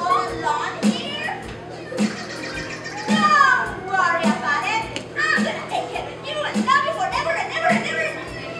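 Background music with a steady beat, about one pulse a second, under the chatter of children's voices.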